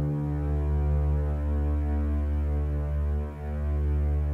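Low sustained synthesizer drone opening a soundtrack track: one steady humming pitch with many overtones, dipping briefly about three quarters of the way through.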